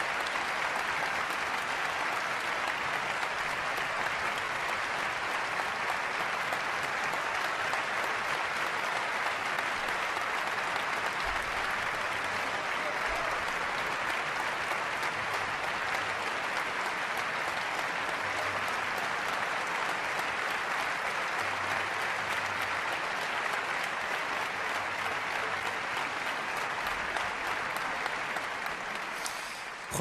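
Large concert-hall audience applauding steadily after a piano concerto, fading out near the end.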